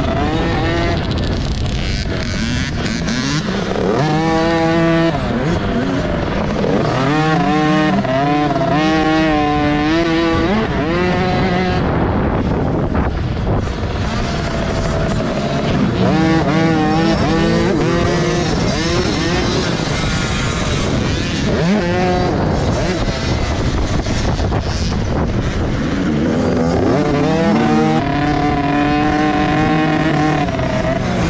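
Small two-stroke youth motocross bike engine being ridden hard on a dirt track. The pitch climbs and drops again and again as the throttle is opened and shut through shifts, corners and jumps.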